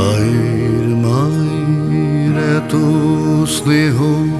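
A man singing slow, long-held notes of a Bengali patriotic song with a wavering vibrato, over steady instrumental backing.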